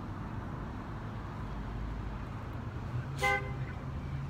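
Steady low rumble of street traffic, with one short car-horn toot about three seconds in.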